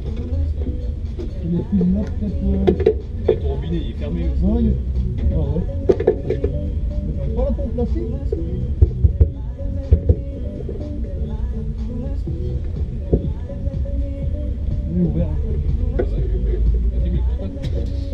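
Indistinct voices and music in the background over a steady low rumble, with a few sharp knocks around the middle.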